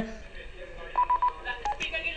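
Short electronic beeps on a telephone line, a quick run of about four identical pips about a second in and one more shortly after, as a phone caller is patched into the broadcast.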